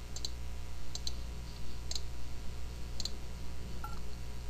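Computer mouse clicking: a few quick pairs of clicks, like double-clicks, over a low steady hum.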